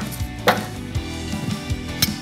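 Metal kitchen tongs knocking against a frying pan while baby potatoes are lifted out and set on a wooden cutting board: a sharp knock about half a second in, then a few softer taps.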